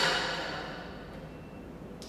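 Ringing tail of a metallic clack as the dry-cut saw's sprung motor head latches at the top of its travel, fading away over about a second and a half.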